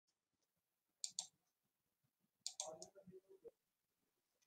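Faint clicks against near silence: two sharp clicks about a second in, then a cluster of clicks with a faint voice-like sound about two and a half seconds in.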